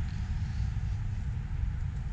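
Wind buffeting the microphone: an uneven low rumble with a faint hiss above it.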